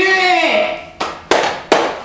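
A voice for about the first second, then three sharp cracks a third of a second or so apart, each dying away quickly.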